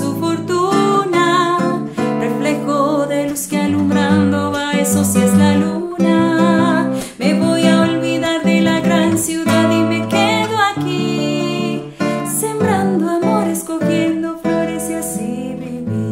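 A woman singing a Colombian bambuco in Spanish while she accompanies herself on a classical guitar, plucking and strumming. Near the end the voice stops and the guitar plays on alone.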